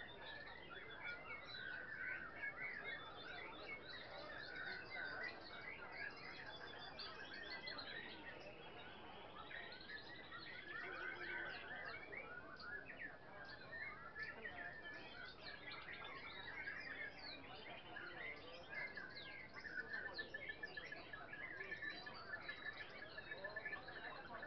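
Many caged songbirds singing at once: a dense, overlapping chorus of chirps, trills and whistles that never stops.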